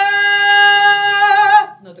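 A woman's voice singing one held open vowel for about a second and a half, with a slight waver near the end. It is sung in full chest voice, powerful and unconstricted, as opposed to a constricted, pinched-throat note.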